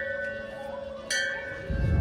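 Hanging brass temple bell rung by hand: struck once about a second in, ringing on over the fading ring of a strike just before. A low rumble comes near the end.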